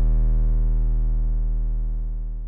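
One deep, held electronic bass note from the hip hop beat, with no drums or vocals, ringing out and slowly fading as the track ends.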